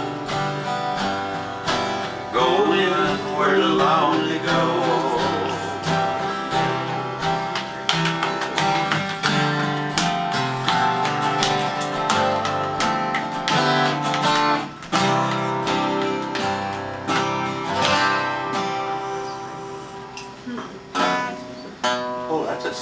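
Two acoustic guitars strumming and picking the instrumental close of a country song, with a wavering sung note about three seconds in. The playing grows quieter near the end, then picks up again briefly.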